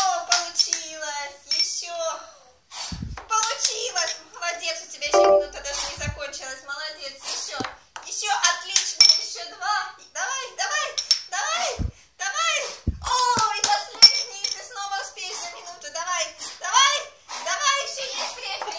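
A child's high voice almost throughout, with a few light knocks in between.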